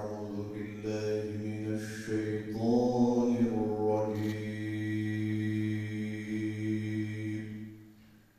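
A man's solo unaccompanied religious chant into a microphone, with an ornamented, melodic line. It settles into a long held note about halfway through, which fades out near the end.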